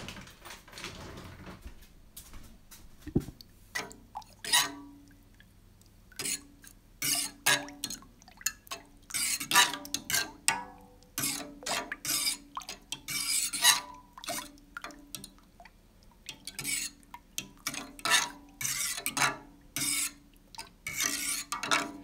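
A utensil scraping and clinking against the bottom and sides of an enamel pot as powdered fabric dye is stirred into water, in quick irregular strokes that start a few seconds in, over a faint steady hum.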